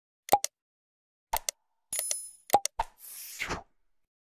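Sound effects of an animated subscribe-button end screen: a handful of short pops and clicks, a bright bell-like ding about two seconds in, and a brief whoosh near the end.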